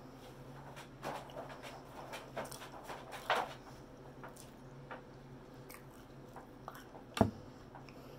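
A person chewing a crispy fried pork chop close to the microphone, with a run of short clicks over the first three and a half seconds. A single sharp thump about seven seconds in is the loudest sound.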